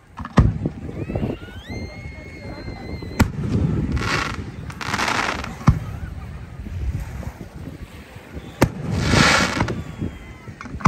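Aerial fireworks bursting overhead: four sharp bangs a few seconds apart, with stretches of hissing, crackling noise between them. A high whistle rises and then holds its pitch for about a second and a half before the second bang.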